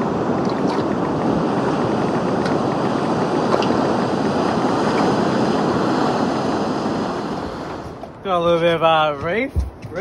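Steady rushing of breaking surf, fading out near the eight-second mark. Then a man's voice holds one drawn-out, wavering call for about a second.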